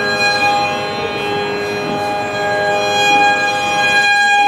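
Carnatic violin holding one long, steady bowed note in the raga Bilahari, with no drum playing.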